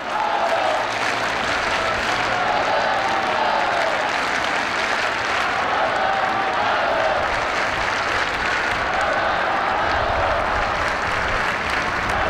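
A large crowd applauding steadily, with many voices calling out over the clapping.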